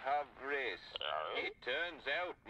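Speech only: a high-pitched voice speaking in short phrases, thin and cut off in the treble like sound from a TV or radio speaker.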